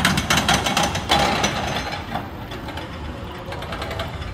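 Steel looping roller coaster train rattling along its track as it passes, a dense clatter loudest in the first second and a half, then dying away.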